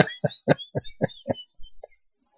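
A man laughing: a quick run of short pulses that fades out and stops a little past halfway.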